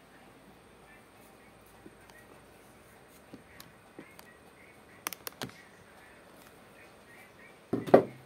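Kitchen things being handled: a few sharp clicks, a quick cluster of clicks about five seconds in, and a louder knock near the end, over quiet room background.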